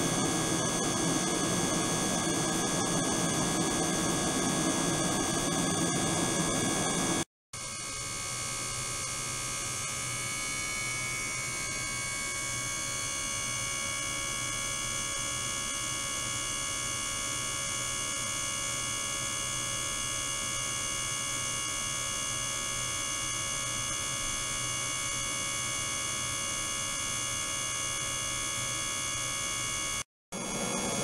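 Ultrasonic transducer system running in a water tank: a steady electronic hum with many steady high tones. About seven seconds in the sound cuts out for a moment, then the same tones resume with less low rumble beneath them.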